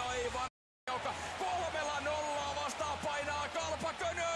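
Ice hockey arena sound: continuous crowd noise with a few sharp knocks of stick and puck on the ice late on. The sound cuts out completely for a moment about half a second in.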